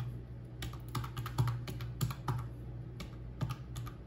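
Plastic keys of a desktop calculator being pressed in quick, irregular succession, about a dozen clicks, as a column of figures is added up.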